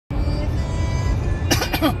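Music playing over the steady low road rumble inside a moving car. About one and a half seconds in comes a short cough-like vocal burst, then speech.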